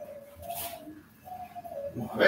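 A bird cooing in a few low, repeated notes that each fall slightly at the end, with a brief rustle about half a second in.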